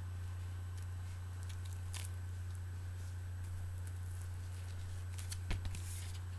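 Short rustles and scrapes of vinyl record album jackets being handled, a couple about two seconds in and a cluster near the end, over a steady low hum.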